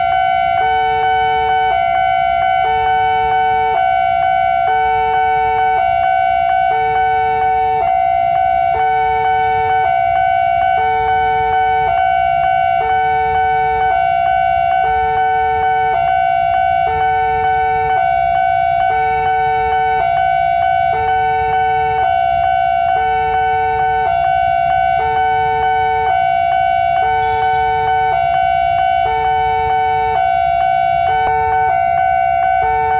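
Electronic alarm of a railway level crossing sounding from the loudspeaker on the crossing post: one steady tone with a second two-note signal alternating over it, repeating about every two seconds. Two alarm sounds playing at once, the 'double' alarm that the uploader finds odd at this crossing, over a low traffic rumble.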